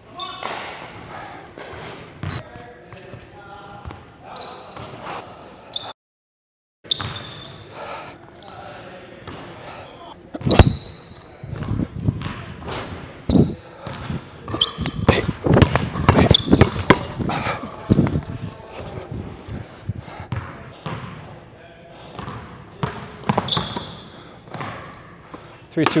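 A basketball dribbled and bounced on a hardwood gym floor, with repeated thuds of ball and feet and short high sneaker squeaks, echoing in a large hall. The sound drops out briefly about six seconds in.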